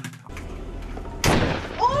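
A single pistol shot from a film soundtrack, sudden and loud, just over a second in, followed shortly by a woman's pained cry as she is hit.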